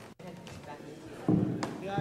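Indistinct voices and room noise in a crowded backstage area. The sound drops out briefly near the start, and a little past the middle comes a sudden loud, low-pitched sound.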